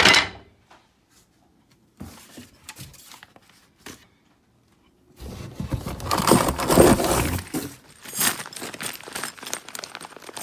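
Flat-pack furniture parts and packaging being handled: a sharp knock at the start, then about five seconds of rustling, crumpling and tearing of cardboard packing material, loudest a little past the middle. Near the end comes the crinkle of a plastic bag of screws.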